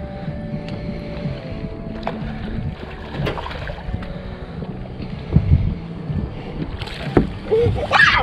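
Steady low hum of a bass boat's trolling motor running, with a few sharp knocks on the boat.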